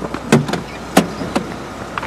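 Car doors of a small hatchback being opened as people climb in: a few sharp clicks and knocks from the door handles and latches, the two loudest about half a second apart.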